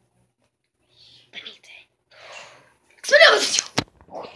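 A child's voice making soft breathy sounds, then about three seconds in a loud, sudden vocal burst lasting about half a second, followed by a sharp click.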